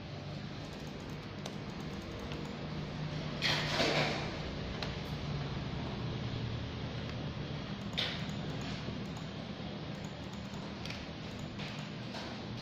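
Handling noise over a steady low hum: a loud rustle about three and a half seconds in, a sharp click about eight seconds in, and a few faint clicks.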